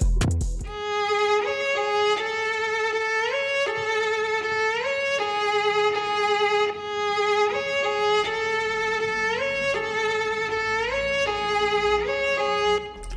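A violin strings sample playing a slow melody with wavering tone, its notes sliding into one another, the same phrase coming round twice.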